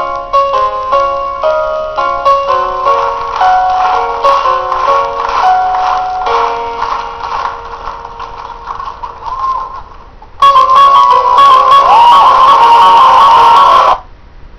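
Backing music for a stage act: a light melody of short, quick notes that slows and gets quieter, then about ten seconds in a much louder, fuller section suddenly cuts in.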